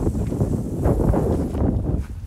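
Strong wind buffeting the phone's microphone in a heavy, gusting rumble, with irregular crackling from a burning wood pile.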